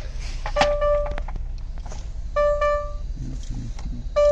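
Electronic beep at one steady pitch, sounding three times: once about half a second in, then twice close together past the middle. A few light clicks come between the beeps, over a steady low hum.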